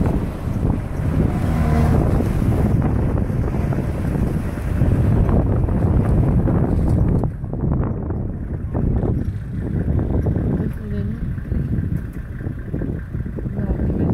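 Safari 4x4's engine running as it drives over wet, muddy ground, a steady low rumble with wind noise on the microphone at the open window.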